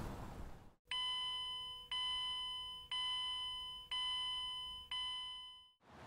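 An electronic chime sounding five times, about once a second, each note starting sharply and dying away before the next.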